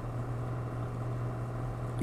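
Steady low hum of background room noise with no other events.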